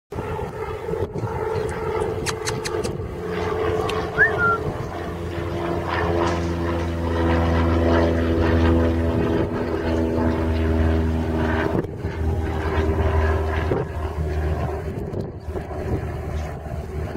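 Steady motor drone with an even, pitched hum that swells about six seconds in and fades by about twelve seconds, over a constant low rumble.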